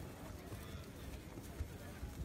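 Quiet outdoor background with faint dull thuds of a horse's hooves as it walks on grass.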